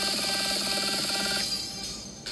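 Electronic dance music with a fast, evenly repeating synth pattern, which fades out near the end.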